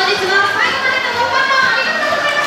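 Children in an audience calling out and squealing excitedly, several high voices overlapping.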